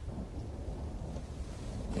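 Low, steady rumble of thunder from a film soundtrack, heard over loudspeakers in a room.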